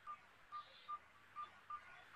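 Faint, short electronic beeps at a single pitch, about five in two seconds and unevenly spaced.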